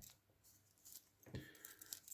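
Near silence, with a few faint light clicks of a Rolex Datejust clone's steel link bracelet being handled on the wrist, starting a little past halfway.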